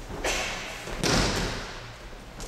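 Aikido breakfall on tatami mats: a body lands with a thud about a quarter second in, then a louder, longer thud about a second in as the thrown attacker hits the mat and rolls.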